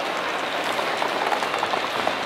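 Stroller wheels rolling over a tiled floor: a steady rush of noise with faint scattered clicks.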